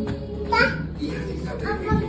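Young children's voices in short calls and chatter while playing, with a low thump near the end.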